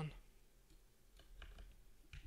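A few faint clicks of a computer mouse, a small cluster of them just past the middle, over quiet room tone.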